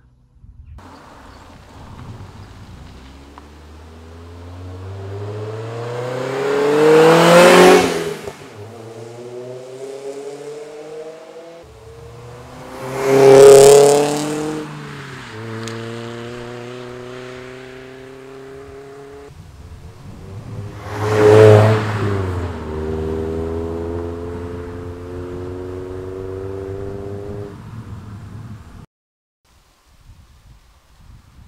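MG TF sports car driving past three times, its engine note rising as it approaches, loudest about seven, thirteen and twenty-one seconds in, then dropping in pitch and holding steady as it pulls away.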